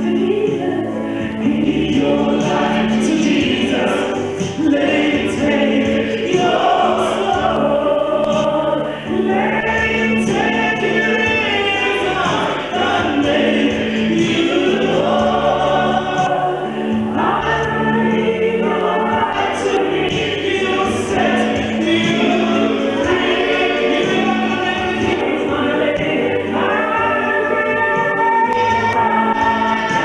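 A woman singing a gospel song through a handheld microphone, in long held lines, over a steady low note.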